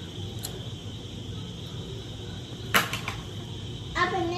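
Quiet pause at a meal over a steady background hum, broken by one sharp click or crack a little under three seconds in, likely from the food or tableware being handled.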